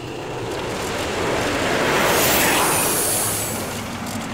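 Cartoon sound effect of pulley trolleys whirring along overhead cables. It is a rushing swell that builds to a peak about halfway and then fades, with a thin high whine near the peak.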